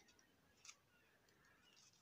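Near silence: room tone, with one faint short tick about two-thirds of a second in.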